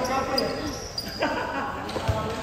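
A basketball bouncing on a hard court, a few thuds with the loudest near the end, among players' voices.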